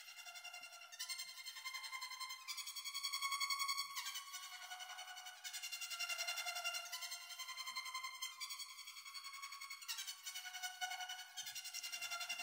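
Quiet strings track of held chords that change every few seconds, played with a neutral reverb and a multi-tap delay (Slapper) whose echoes are thrown around the mix.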